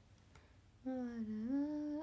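A young woman's drawn-out, hum-like "arā", held for about a second and dipping slightly before rising in pitch, after a near-silent start.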